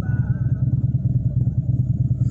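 Steady low rumble of a running vehicle engine, unchanging throughout.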